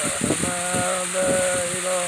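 A male voice chanting a Sufi zikr (ilahi), drawing out long held notes on a nearly steady pitch, with a few soft knocks underneath.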